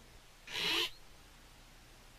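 A single short spray hiss from an aerosol can, under half a second long, about half a second in.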